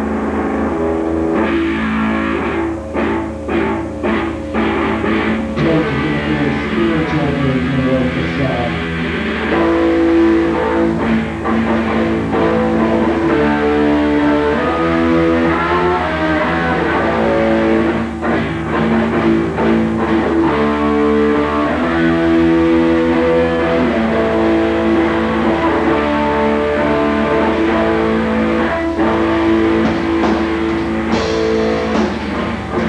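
Live punk rock band playing a guitar-led passage: electric guitar chords over bass, with drums, at a steady loud level.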